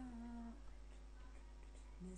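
A man humming to himself, holding one low steady note that ends about half a second in, then faint room noise.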